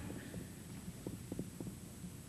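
Faint low hum with a few soft clicks and rustles as a transparency is laid on an overhead projector.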